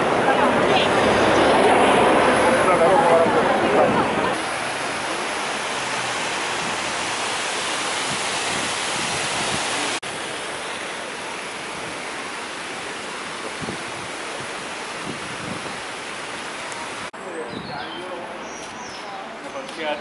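Busy street noise with voices, then a steady rush of water from large ornamental fountains, and quieter outdoor voices near the end.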